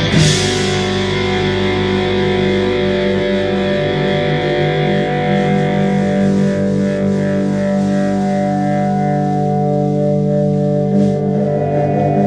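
Distorted electric guitars holding a steady, droning chord that rings on at the close of a live rock song, with a cymbal crash dying away in the first second.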